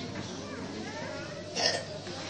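Faint voices of a gathered crowd, with one short, loud vocal burst near the end.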